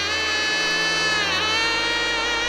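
Jazz-rock music: a bright, buzzy lead instrument holds a note with a slight waver, dips in pitch and comes back up about one and a half seconds in, over a sustained bass note that changes pitch near the end.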